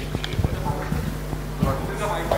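A few short, light knocks and thumps, footsteps and a wooden chair shifting on a stage, over a low steady hum.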